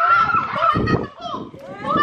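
Excited high-pitched shrieking and squealing from kids' voices, with a low rumble about a second in.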